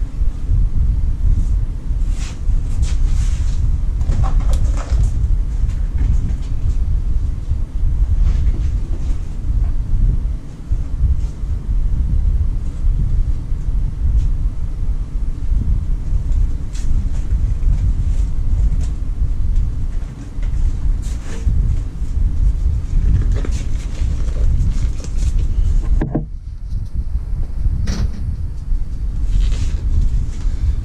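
Steady low rumble with scattered light clicks and clinks of hand tools and bolts on metal, and a few louder knocks near the end.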